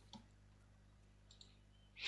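Near silence: room tone with a faint steady low hum, and one faint click just after it begins.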